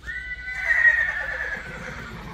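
Horse whinnying: one long high call that starts suddenly and slowly falls in pitch, ending in a low fluttering sound.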